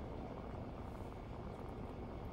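Steady low rumble of a vehicle heard from inside its cabin, with no distinct events.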